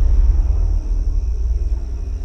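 A steady low rumble with no speech.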